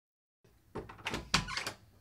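A closed apartment front door's lock and latch being worked to open it: a quick run of metallic clicks and knocks, the loudest about halfway through.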